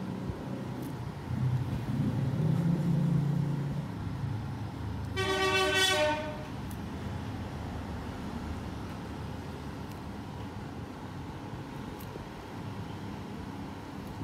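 Steady low background rumble, louder for a few seconds near the start, with one pitched horn-like tone lasting about a second, about five seconds in.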